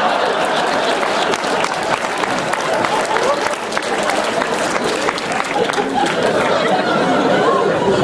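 Audience laughing, clapping and chattering, a steady crowd reaction filling a large hall.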